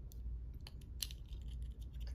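Scattered light plastic clicks as fingers work apart the two snap-together halves of a small round plastic sound-pin battery case, the sharpest click about a second in.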